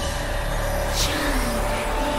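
Ominous dramatic background score: a low rumbling drone under a few held tones, with a brief whoosh about a second in.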